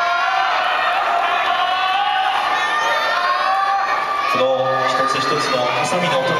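Arena crowd shouting and cheering, many voices calling out over one another. About four seconds in, one deep male shout is held for more than a second above the rest.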